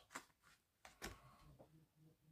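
Near silence: room tone with a faint low hum and two faint short clicks, one near the start and one about a second in.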